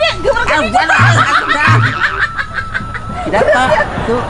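A person laughing and snickering, with a thin steady high tone held under it until near the end.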